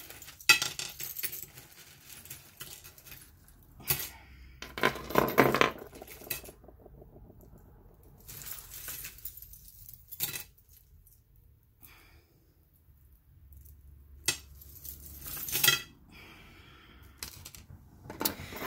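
Costume jewelry, metal rings and beaded charms, clinking and rattling as it is grabbed in tangles and set down on a wooden table, in irregular bursts with short quiet gaps.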